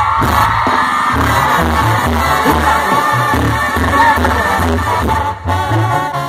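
Live banda music played loud by a Mexican brass band, with trumpets and a pulsing bass line over a steady beat, and a crowd cheering along.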